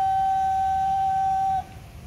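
Bugle call ending on one long held high note, which breaks off about one and a half seconds in.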